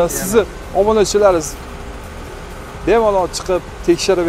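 Speech in short phrases, with a steady background hum in the gaps between them.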